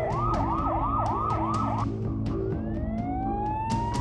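Police car siren: a fast yelp warbling up and down for about two seconds, then, after a short break, a slow wail rising in pitch, over background music.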